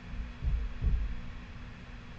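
Two dull low thumps, about a third of a second apart, over a steady low hum.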